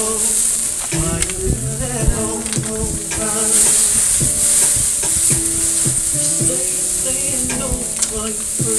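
Burger patties sizzling on a charcoal grill grate, a steady high hiss that swells and fades as water is squirted from a plastic bottle onto the flare-ups. Music plays underneath.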